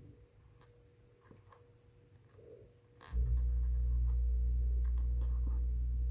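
Faint small clicks of plastic pony beads being handled on a wooden floor. About three seconds in, a steady low rumble starts abruptly and carries on, louder than anything before it.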